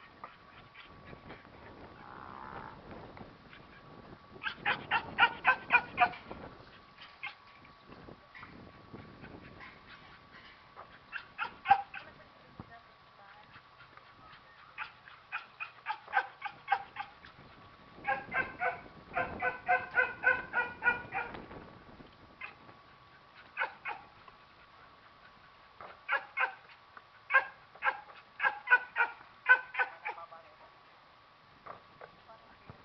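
A dog barking in several bouts of quick, evenly spaced barks, about four or five a second, with pauses between bouts. A faint steady high hum runs underneath.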